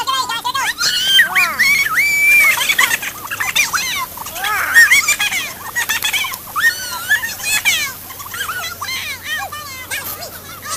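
Young voices squealing, shrieking and laughing in excitement, many high-pitched cries rising and falling and overlapping.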